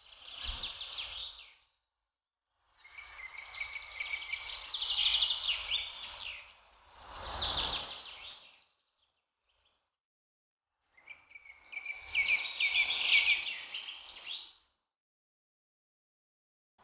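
Small birds chirping and twittering in four bursts of a few seconds each, cutting out to silence between them.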